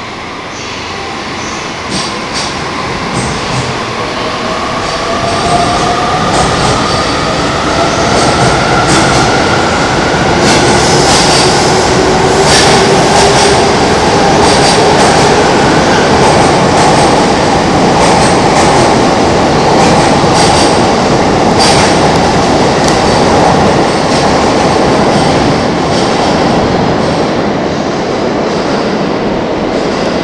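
E257-series ten-car electric express train departing and accelerating past. Its traction motors whine, rising in pitch over the first dozen seconds, over a loud steady rolling rumble. The wheels click sharply over rail joints as the cars go by.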